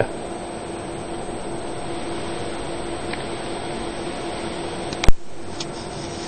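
Laminator switched on and heating up, giving a steady hum with a hiss. A single sharp click comes about five seconds in, after which the hiss is lower.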